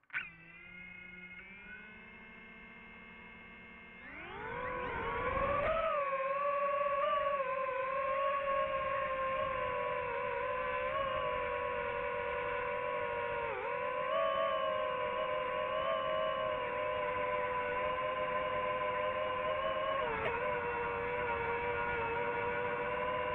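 DJI FPV drone's motors and propellers: they start with a sharp burst and settle to a low whine, then about four seconds in the whine rises steeply as the drone throttles up and takes off. It holds a steady, high whine in flight, with brief dips in pitch about two-thirds of the way through and near the end. Heard through the drone's own camera microphone.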